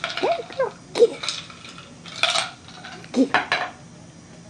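A small toy puppy rattling and clinking a small hard toy as she bats and rolls it on the carpet: a few short, sharp bursts, with short squeaky sounds in the first second. A person laughs near the end.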